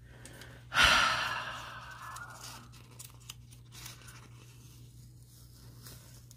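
A long, heavy sigh about a second in that tails off slowly: a frustrated exhale at a mistake.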